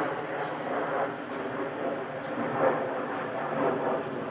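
A four-horse team trotting and pulling a carriage: rolling wheels and hoofbeats with a steady rumble, and a high clink repeating about once a second.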